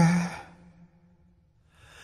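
A male singer's held note trails off breathily in the first half second of a pop ballad, then a second of near silence, then a faint breath rising near the end before the next sung line.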